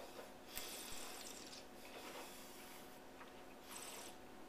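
Faint breath and mouth noises of a taster working a sip of red wine: a hissy draw of air about a second long starting about half a second in, and a shorter breath near the end, over a low steady room hum.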